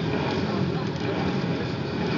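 Steady background of distant motorcycle engines running, mixed with a murmur of voices.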